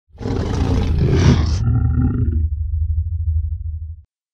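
Intro sound effect: a loud roar that opens with a hissy burst for about a second and a half, then trails into a low rumble that cuts off suddenly at the end.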